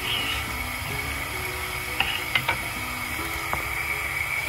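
Sugar syrup boiling in a saucepan, a rapid crackle of bubbles with a few faint clicks, over soft background music.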